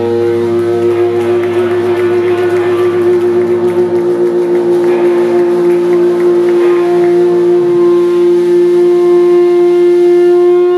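Electric guitar feedback from an amplifier: one steady, loud, high tone held with a slight waver, over a low bass drone that stops about four seconds in.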